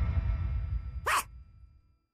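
Closing notes of a cartoon theme tune fading out. About a second in, one short yelp-like bark from the cartoon pug, then the sound dies away to silence.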